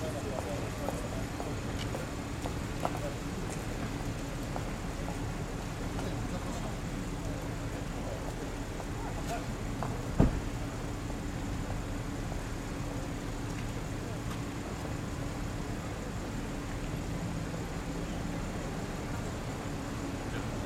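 Outdoor street ambience of car engines idling with a steady low hum, under indistinct voices. A single loud thump about halfway through.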